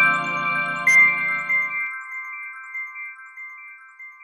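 Radio station ident jingle: a rising run of bell-like chime notes over a low sustained chord. The highest note strikes about a second in, the low chord drops out soon after, and the chimes ring on and fade.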